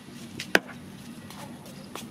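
Kitchen knife chopping on a wooden cutting board: one sharp, loud strike about half a second in, with a softer strike just before it and a few faint taps later.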